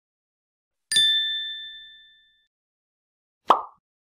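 Sound effects of an animated logo: a bright, bell-like ding about a second in that rings out and fades over more than a second. A short pop follows near the end.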